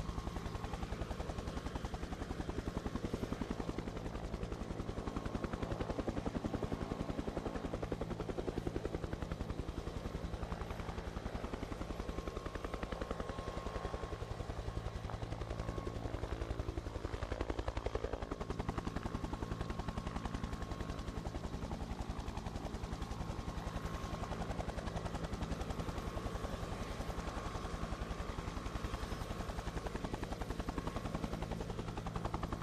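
Helicopter rotor sound, a track laid on by the broadcaster: a steady, rapid blade chop over a low engine drone, unchanging throughout.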